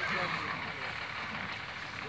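Indistinct voices of people talking at a distance over a steady background hiss.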